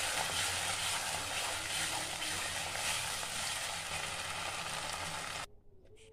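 Greens frying in a hot kadai with a steady sizzling hiss as a wooden spatula stirs them. The sizzle cuts off suddenly near the end.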